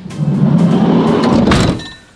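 Ford Transit van's sliding side door being rolled shut: a steady rolling noise for about a second and a half, ending in a slam as it latches.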